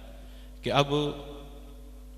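A man's amplified voice speaks a short, drawn-out phrase about half a second in, then pauses. Through the pause a steady low hum runs on.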